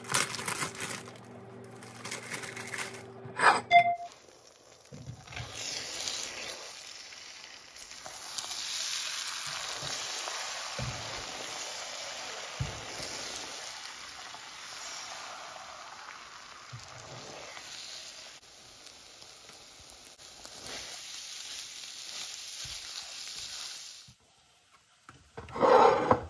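Scrambled eggs sizzling in a frying pan while a spatula stirs and scrapes them, running for about twenty seconds after a few seconds of kitchen clicks over a steady tone. Near the end a short clatter, a plate set down on a stone counter.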